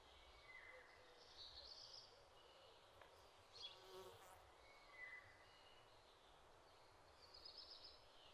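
Faint nature ambience: a few short, high bird chirps come and go, and an insect buzzes briefly about halfway through.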